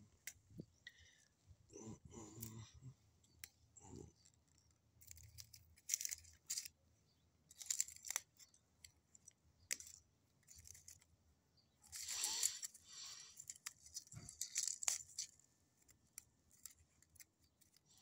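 Dry plant stems and dead leaves rustling and crackling close to the microphone, in irregular bursts a few seconds apart.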